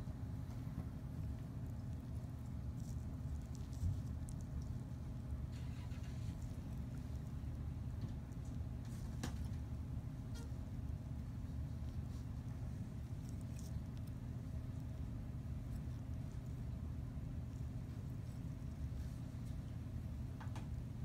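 Steady low machine hum, with a few faint short clicks of metal instruments.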